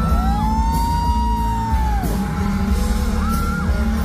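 Live pop song through a concert PA: a male singer's voice over a band backing with heavy bass, one long held note sliding up and holding through the first two seconds and a short high note near the end.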